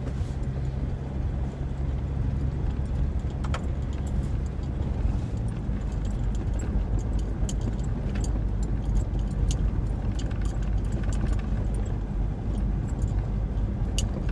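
Steady engine and road rumble heard inside a moving Ford's cabin, with scattered light ticks and rattles through the second half.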